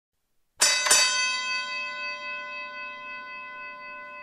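A metal bell struck twice in quick succession, about a third of a second apart, then left ringing with a clear tone that slowly fades.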